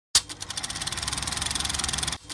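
Intro sound effect: a sharp hit, then a fast, even clatter of clicks, many each second, that grows slightly louder.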